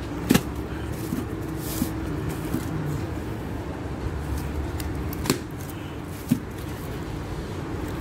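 Plastic-wrapped coils of electrical cable being handled, giving a few short knocks and clicks, the sharpest about a third of a second in and others about five and six seconds in, over a steady low background hum.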